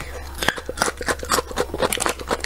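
Close-miked chewing of crunchy food: a fast run of crisp crunches, about five a second, over a steady low hum.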